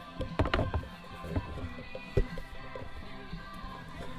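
Soft background music, with a few sharp knocks and clicks as a removable steering wheel is worked onto its hub by hand, the loudest a little past halfway.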